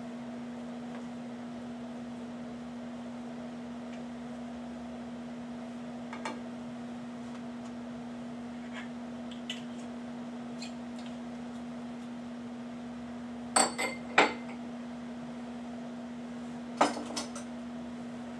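Scattered sharp clinks of kitchen utensils and a glass bottle being handled, the loudest in a quick cluster about three-quarters of the way through and another shortly before the end, over a steady low hum.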